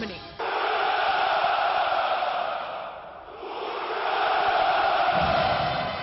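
A massed chorus of parade soldiers shouting a long drawn-out cheer (the Russian 'Ura!') in two swells: the first begins just after the start and dies away around three seconds in, the second rises again and fades near the end.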